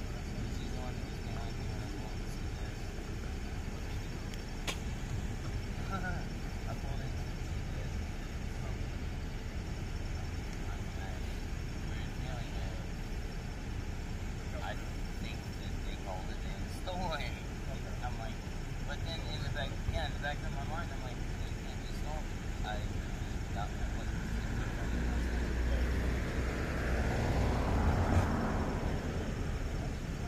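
Indistinct distant voices over a steady low rumble, with a car passing close by near the end, building to a peak and then fading away.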